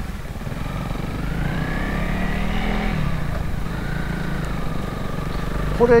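Honda CRF250L single-cylinder four-stroke engine pulling away from a slow roll, its pitch rising, falling back about three seconds in, then climbing again.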